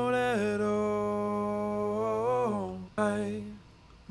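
Soloed vocal tracks played back in a mix: a male lead vocal with a low harmony part layered under it, holding one long sung note that bends down near its end, then a short sung phrase about three seconds in before a brief gap.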